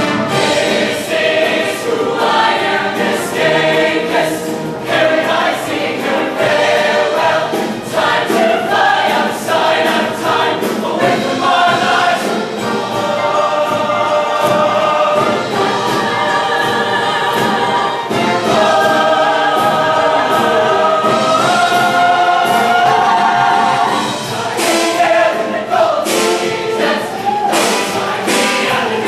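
Large show choir singing in parts over band accompaniment with a steady, driving beat.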